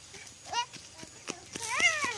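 Sandals slapping on a paved path as a toddler runs, about three light steps a second. Two short high-pitched calls ride over them: a brief rising one about half a second in and a louder one near the end that rises and then slides down.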